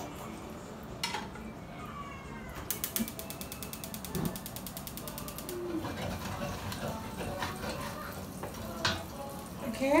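A fast, even run of mechanical clicks, ratchet-like, lasting about three seconds from near the third second, over faint kitchen noise.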